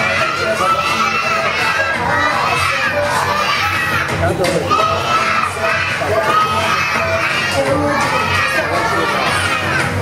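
A crowd of young children shouting and cheering together, many high voices overlapping, loud and steady throughout.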